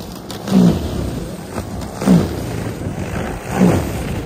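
DeWalt cordless single-stage snow blower running while it is pushed through snow. Its whir surges briefly louder about every second and a half, the pitch dropping each time as the auger takes a load of snow.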